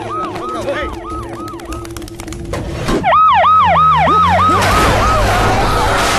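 Police siren in quick rising-and-falling whoops, about three a second, growing louder about three seconds in. Near the end a loud rushing noise builds up over it.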